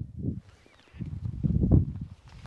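Low, uneven rumbling noise on a clip-on lapel microphone, fading briefly about half a second in and loudest near the end.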